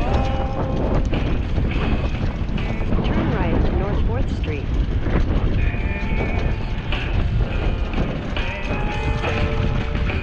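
Wind and road rumble on a riding cyclist's action-camera microphone, with music of short held notes playing over it.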